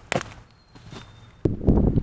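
Footsteps of a person walking outdoors, with a sharp knock just after the start. About one and a half seconds in the sound jumps louder into close, dense footsteps and rustling on the forest floor.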